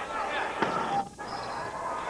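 Gym crowd noise during a volleyball rally, with one sharp hit of the ball about half a second in and a brief dip in the sound just after.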